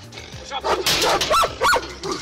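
Caucasian Shepherd dog barking: several sharp barks in quick succession, starting about half a second in.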